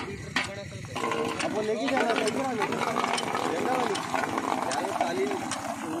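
Indistinct voices, with the metal hand pump's handle clacking about once a second as it is worked.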